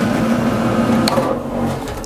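Outdoor wood boiler's draft fan running with a loud, steady hum, with a single click about a second in as the unit is switched off, the hum dropping away at the end.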